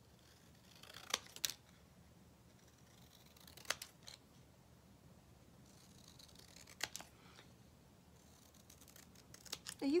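Scissors cutting paper: a few short, separate snips spaced a second or more apart.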